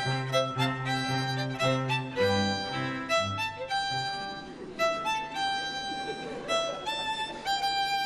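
String quartet playing: violins over a repeated low cello line that stops about halfway through, leaving the violins holding long notes.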